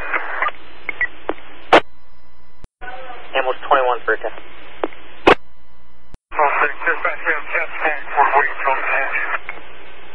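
Fire department two-way radio traffic heard through a scanner: short, thin voice transmissions over a steady hiss, too garbled to make out. Sharp squelch clicks come about two seconds in and again about five seconds in, and the signal drops out to silence briefly between keyings.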